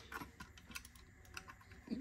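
A few faint, scattered clicks and taps from an AM5 CPU socket's metal load plate and retention lever being pressed down and clipped shut over the processor.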